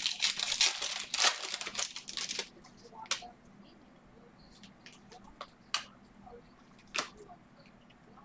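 Trading card pack wrapper being torn open and crinkled for about two and a half seconds. A few light, sharp clicks follow as the cards are handled.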